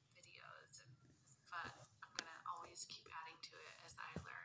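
Faint speech: a woman talking quietly, almost at a whisper, with a short click about two seconds in.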